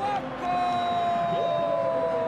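A man's long, drawn-out shout held on one note that sinks slowly in pitch for about two and a half seconds, overlapped by a second shorter rising-then-falling vocal cry: a television football commentator's extended exclamation over a goal.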